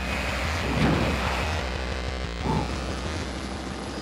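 Steady loud droning rumble of a light aircraft's cabin noise, with a couple of whooshing sweeps over it from the title sequence.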